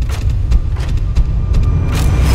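Deep, steady bass rumble from an edited soundtrack, with sharp clicks scattered over it.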